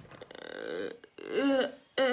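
A girl making wordless vocal noises: a rough, raspy, burp-like sound for about the first second, then a short pitched vocal note that rises and falls.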